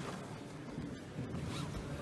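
Faint rustling and scraping of jiu-jitsu gi fabric as two grapplers grip and pull at each other's sleeves and lapels, with a few short scratchy rustles.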